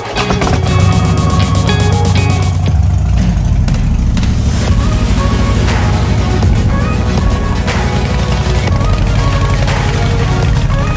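Harley-Davidson Street Glide's V-twin engine running at idle, a steady low rumble, with background rock music over it.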